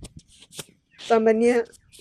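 A woman's voice: a pause broken by a few short clicks, then one short spoken phrase about a second in.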